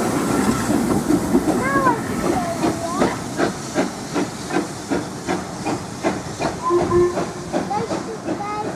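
GWR Hall class two-cylinder 4-6-0 steam locomotive 6960 Raveningham Hall pulling away from a standing start: hissing steam with regular exhaust beats, about two to three a second, growing fainter as the train draws off.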